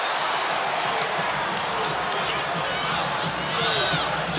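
Arena crowd noise from a basketball game, with sneakers squeaking on the hardwood court and a basketball being dribbled.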